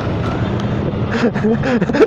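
Motorcycle and scooter engines idling with street traffic, a steady low hum; faint voices join near the end.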